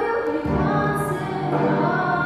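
A woman singing a slow worship song into a microphone, holding long notes, accompanied by piano and a djembe.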